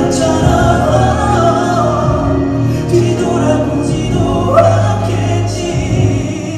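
Male vocal group singing a slow ballad live with several voices together, over piano and cello accompaniment; about four and a half seconds in, one voice slides upward in pitch.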